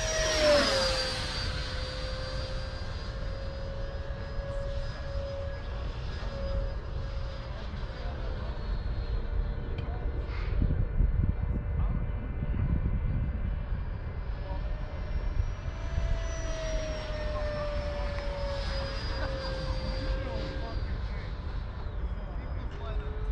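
Electric ducted fan of a Freewing L-39 RC model jet whining in flight: the tone drops in pitch as the jet passes close right at the start, holds steady, then rises and slowly falls again on another pass. The pilot says the fan sounds out of balance. Wind rumbles on the microphone throughout.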